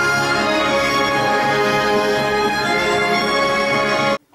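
Orchestral theatre music with strings, playing steady, sustained chords at a full, even level.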